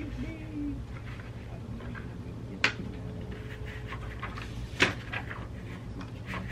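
Two sharp clicks about two seconds apart, with a few softer ticks after the second, as a plastic screen protector film is handled over a tablet's glass. A faint steady hum runs underneath.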